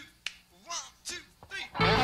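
A few sharp clicks and short swooping notes from the stage instruments, then about two seconds in a live jazz-rock band comes in loudly at once, electric guitar and bass leading the start of a song.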